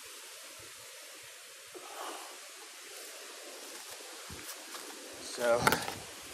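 Faint, steady outdoor background hiss with no clear event in it. A man's voice comes in briefly near the end.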